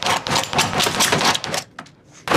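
Kitchen knife stabbing and scraping repeatedly at a photograph on a hard board, several quick strikes a second, stopping about one and a half seconds in.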